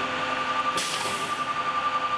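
A machine running with a steady whine and a fluttering level, with a short burst of hiss a little under a second in.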